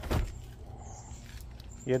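A garden door being pushed open: one short thump about a fifth of a second in, then a low, quiet background.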